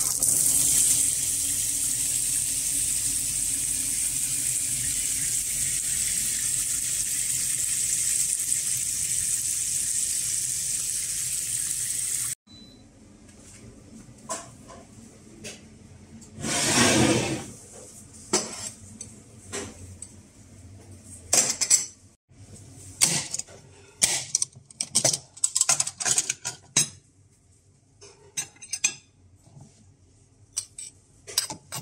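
A bathtub tap running steadily, a loud even rush of water that cuts off abruptly about twelve seconds in. After that, kitchen handling sounds: a short rush of noise, then a string of clinks and clicks of crockery and metal as an espresso portafilter and coffee scoop are handled.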